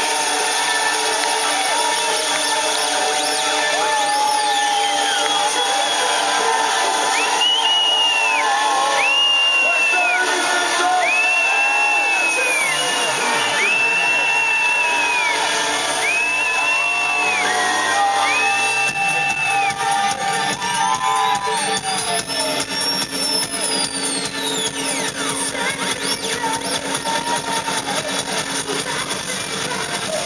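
Loud live electronic dance music from the stage PA: a run of six high held notes about a second apart in the middle, then a sweeping rising-and-falling synth glide over a fast pulsing beat.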